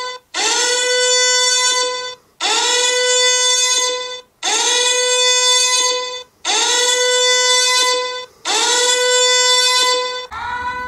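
Electronic alarm tone from a smartphone EMF-meter app: a buzzy, mid-pitched tone held for nearly two seconds and repeated five times at even two-second intervals, each note sliding up slightly as it starts. It sounds while the app shows a high magnetic-field reading of over 1000 µT.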